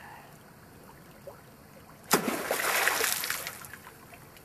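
Splash of a hand-made spear driven into shallow creek water, sudden about two seconds in and fading over about a second and a half. Before it only the faint run of the stream is heard.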